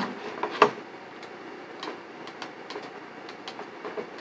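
A few light, scattered clicks from the computer's controls over faint background hiss, with one sharper click about half a second in, as the eraser brush is worked in Photoshop.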